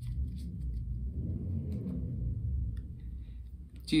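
A low background rumble that sets in suddenly and holds steady for nearly four seconds, swelling slightly in the middle, with a few faint clicks over it.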